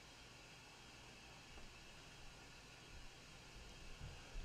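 Near silence: faint room tone with a low steady hiss.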